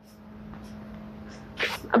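A long breathy blow that builds for about a second and a half, then a short, loud, snort-like burst of breath near the end.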